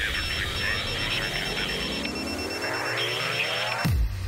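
Sound-designed intro stinger: a crackling, radio-like noise band with thin beeping tones that break on and off, under a rising sweep that climbs for about three seconds. At the very end it drops sharply in pitch into a low bass drone.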